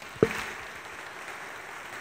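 Audience applauding: a steady, even patter of many hands clapping, with one sharp click just after the start.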